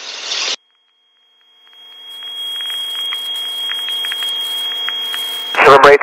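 Aircraft radio audio: the tail of a transmission cuts off, and after a brief silence a steady radio hiss with a thin high tone and faint crackles fades in and holds until a controller's voice begins near the end.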